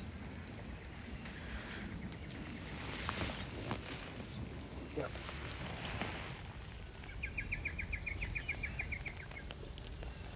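Outdoor bush ambience with a steady low rumble and scattered snaps and crackles of branches and leaves. A bird gives a rapid, even trill of about seven notes a second for about two seconds in the second half.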